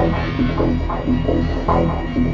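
Experimental electronic music: a low throbbing drone under a sequenced run of short pitched notes repeating about four times a second.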